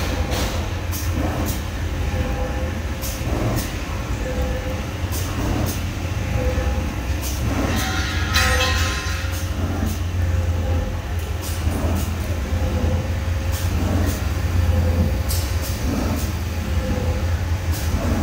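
Paper core cutting machine running: a steady low motor hum, with a short tone repeating about once a second and scattered clicks. A louder burst of noise comes about halfway through.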